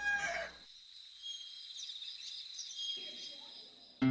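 A rooster's crow ending about half a second in, followed by faint chirping of small birds.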